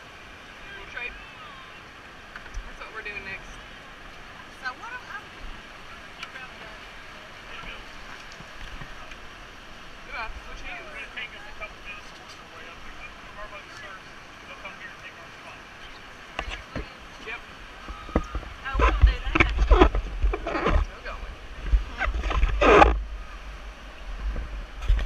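Rushing whitewater rapid with distant shouting voices. From about three-quarters of the way in, loud irregular splashes and a heavy low buffeting of water and wind on the microphone as the raft rides into the rapid.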